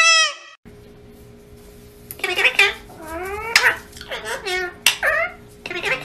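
A parakeet's high talking voice saying "I love you babies", cut off abruptly. Then, after a pause, a blue Indian ringneck parakeet gives about five short, high calls, each swooping up and down in pitch.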